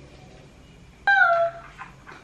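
Pug puppy giving one short, high-pitched whine about a second in, its pitch sagging slightly as it fades.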